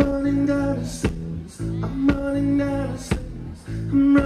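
A rock band playing live: drum kit, electric guitar and bass guitar. A held, pitched note returns about every two seconds over a steady beat of roughly one drum hit a second.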